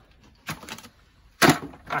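Plastic bait buckets and a fishing riddle being handled and set together: a light knock about half a second in, then a sharper, louder clack about a second and a half in.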